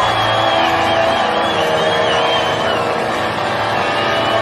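A live rock band playing loud, with a dense wash of distorted electric guitars and a wavering high line over it, heard through a large open-air crowd's noise.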